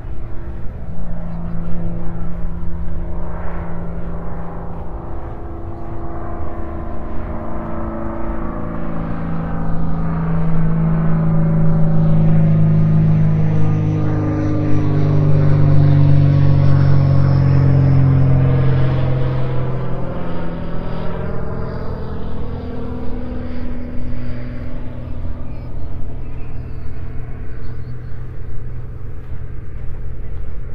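Engine drone of a low-flying aircraft passing over. It grows louder to a peak about halfway through, then fades.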